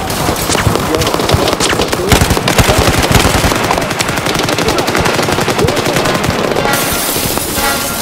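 Dense, rapid gunfire: machine-gun fire in quick succession, heard as a recorded sound effect.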